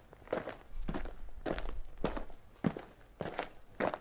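Footsteps: a series of short, sharp steps, roughly two a second at an uneven pace.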